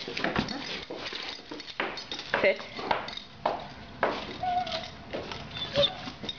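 An excited pet dog moving about with many short clicks and rattles and a few brief whines, while a person's voice tells it to sit about two seconds in.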